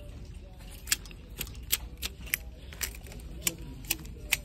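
Plastic clothes hangers clicking against a metal clothing rack as shirts are pushed along it one at a time: a sharp click roughly every half second, at an uneven pace.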